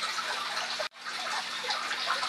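Steady sound of running water from aquarium filtration, with a faint steady hum underneath. It breaks off for an instant about a second in.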